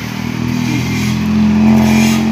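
A motor engine running steadily with a low hum that grows louder toward the end.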